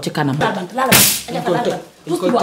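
Women talking in Wolof, broken about a second in by one brief, sharp hiss-like burst.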